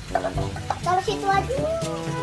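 Light clinks and scrapes of small painted clay toy pots and a clay ladle being handled, under a voice and background music.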